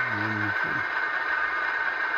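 Alco diesel engine sound from a TSU2 sound decoder in an HO-scale Bowser RS-3 model locomotive, running steadily through the model's small speaker. A brief low voice sounds in the first half second.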